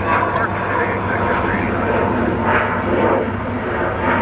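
Four Rolls-Royce AE 2100 turboprop engines of a Lockheed C-130J Super Hercules running steadily, with a continuous low drone.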